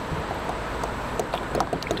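Water lapping against a plastic kayak hull as it rocks under a standing dog, with wind on the microphone and a few faint taps in the second half.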